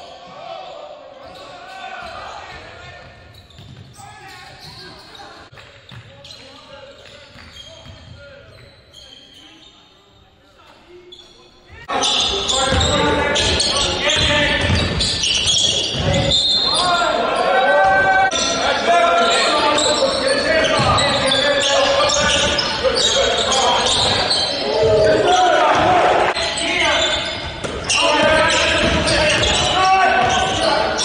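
A basketball bouncing on a hardwood gym floor during a game, with voices echoing around the hall. The sound is fairly quiet at first, then jumps much louder about twelve seconds in.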